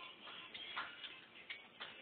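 A few faint, irregular clicks and ticks.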